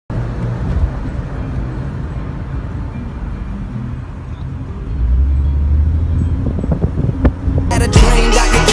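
Low, steady outdoor rumble, louder from about five seconds in. Hip-hop music cuts in abruptly just before the end.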